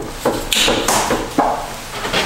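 A handful of irregular metallic clicks and knocks as the Harley-Davidson golf cart's engine is turned over by hand: the engine turns freely and is not seized.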